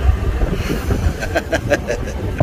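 Wind buffeting a phone microphone in open desert: an irregular, gusting low rumble, with faint voices in the background.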